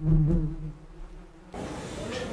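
Buzzing of honeybees, a steady low hum that is loudest at first and fades after about half a second. About three quarters of the way through it cuts off, giving way to the murmur of a crowded hall.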